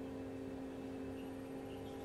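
Steady low hum of an egg incubator's fan running, several even tones with no change, with a few faint short high chirps over it.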